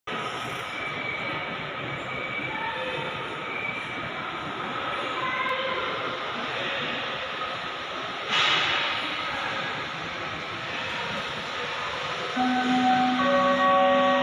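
Steady background noise of a large, airy terminal hall, with a brief louder rush about eight seconds in. Held musical notes come in near the end.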